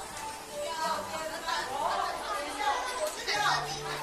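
A group of children chattering, many voices overlapping, with the dance music paused.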